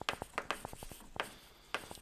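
Chalk writing on a blackboard: an uneven run of small taps and short scratches as a word is written out.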